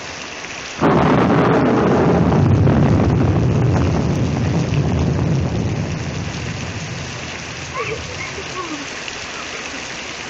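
Heavy rain falling steadily, with a sudden clap of thunder about a second in that rumbles and slowly fades away over the next several seconds.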